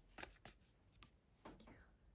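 Faint handling of tarot cards: a few light clicks and slides as a card is moved and picked up off a cloth-covered table.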